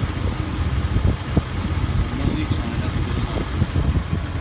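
Dodge Ram's 5.7-litre Hemi V8 idling steadily, heard up close in the open engine bay.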